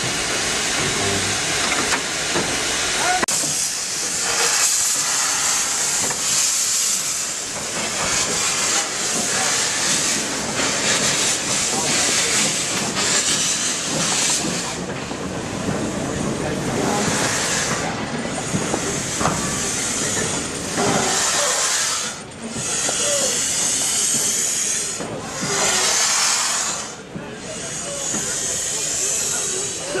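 GWR steam locomotive blowing off steam in a loud, steady hiss. In the second half the hiss swells and eases in surges every couple of seconds.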